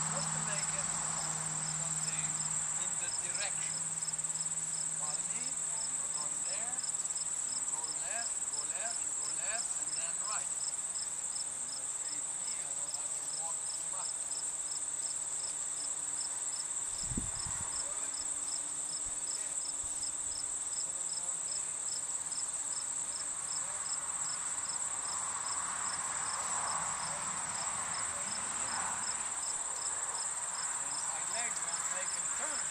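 Crickets chirping: a steady high-pitched trill with an evenly pulsed chirp over it, about two or three chirps a second, and a single dull low thump a little past halfway.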